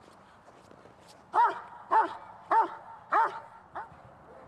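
Large dog barking five times at an even pace, about half a second apart, the last bark softer.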